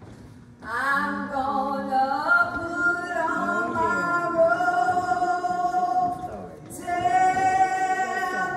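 Unaccompanied singing of a slow church song, with long held notes that slide between pitches. It begins about half a second in and pauses briefly for a breath between phrases near the end.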